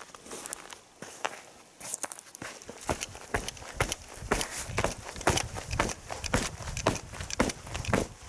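Footsteps of boots on thick frozen pond ice, a run of short irregular steps starting about two seconds in.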